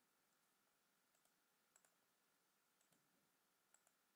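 Near silence broken by a few faint, sharp clicks of a computer mouse, spread across a few seconds.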